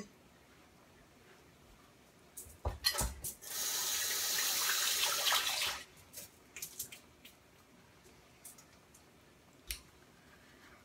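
Kitchen sink tap running for about two seconds and then shut off, after a couple of knocks. Light clicks and taps follow.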